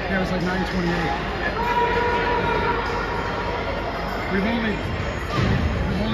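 Indistinct spectator voices in an ice hockey arena, over the rink's steady low background noise.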